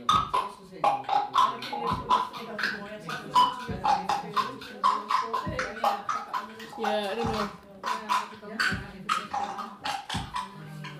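Live-coded electronic music from TidalCycles: a bass drum sample repeating about every one and a half to two seconds, under a dense pattern of short, chopped, voice-like sounds.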